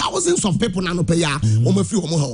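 A man's voice talking fast and without a pause, in an animated, sing-song delivery.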